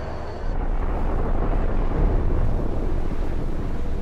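Steady low rumble and rushing air of F/A-18 Super Hornet fighter jets flying fast and low over the sea, swelling louder about half a second in.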